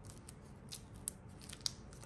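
Silicone spatula working softened butter in a glass bowl: a few short, sharp scraping clicks as the blade catches against the glass, the sharpest near the end.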